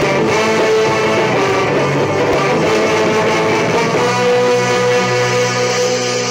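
Instrumental passage from a ska band's song, with electric guitar strumming over the full band. For about the last two seconds the band holds a sustained chord.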